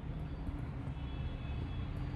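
Steady low rumble and hiss of background noise, with no distinct events.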